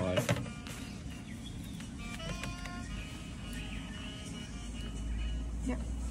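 Quesadilla sizzling in a non-stick frying pan on a portable gas stove, the heat just turned down from high, as a spatula presses on it. A low rumble grows louder near the end.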